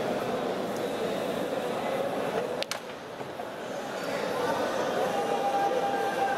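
Steady chatter of a crowd of spectators around a pool table, with one sharp click of a billiard shot about two and a half seconds in.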